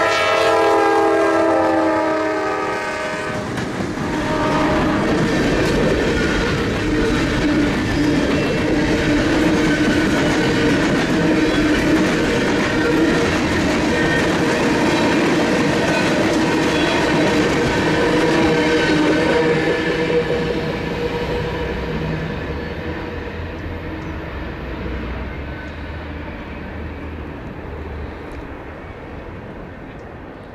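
Norfolk Southern freight train led by a GE Dash 9-44CW diesel locomotive: the horn sounds for the first three seconds or so, then the locomotives pass with their engines running and the freight cars roll by with steady wheel clatter on the rails. The sound fades in the second half as the train moves away.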